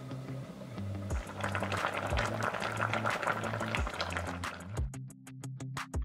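A lidded stockpot of pork-rib and sour-kimchi stew simmers on low heat with a dense, crackly bubbling from about a second in to nearly five seconds. Background music with a steady bass line plays under it, and its ticking beat is heard near the end.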